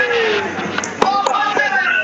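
A volleyball struck by hand with one sharp smack about a second in, over the voices of a crowd of onlookers in a large hall.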